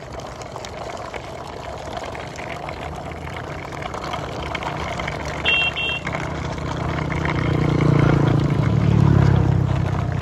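Outdoor road noise with a motor vehicle's engine drawing near, growing louder to a peak near the end. Two short high beeps come a little past the middle.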